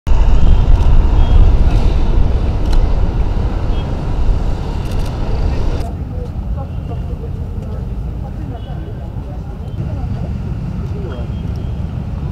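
Outdoor ambient noise: a loud low rumble that drops away suddenly about six seconds in. It leaves a quieter background with faint voices.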